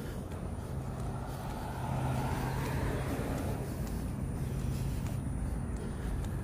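Steady low rumble of motor traffic on the adjacent road, with a constant low engine hum and a slight swell about two seconds in.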